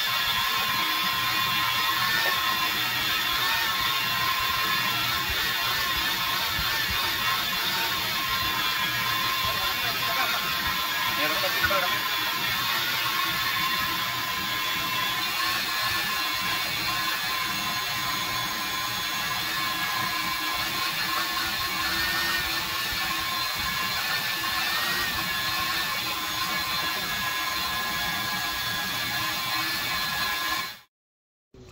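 Wet/dry shop vacuum running steadily, its motor whine wavering in pitch now and then as the nozzle is worked over seat upholstery.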